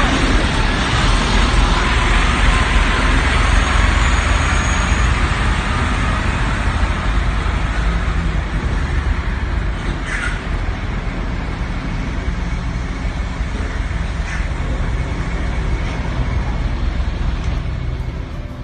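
Heavy diesel truck engines running close by as semi-trucks move slowly past, a steady loud rumble. A short hiss cuts through about ten seconds in, with a fainter one a few seconds later.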